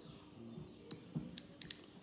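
A handful of faint, short clicks at irregular spacing, starting about a second in, over quiet room tone.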